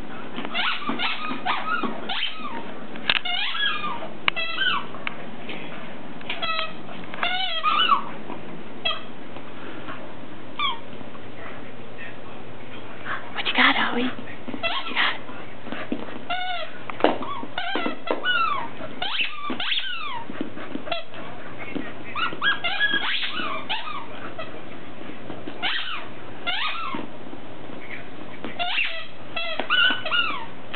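A squeaky dog toy being chewed and squeezed by a dog: irregular clusters of short, high squeaks, many sliding up or down in pitch, with pauses between.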